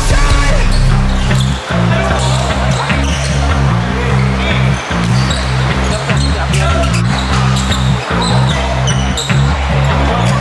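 Background music with a loud, repeating bass line, with a basketball bouncing on the court and other game sounds under it.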